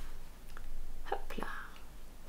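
A woman's soft, whispered speech: a few short murmured syllables between about half a second and a second and a half in.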